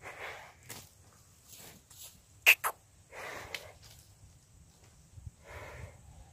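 Hallikar bull snorting, three short forceful breaths a few seconds apart. Two sharp clicks close together, about halfway between the first two breaths, are the loudest sounds.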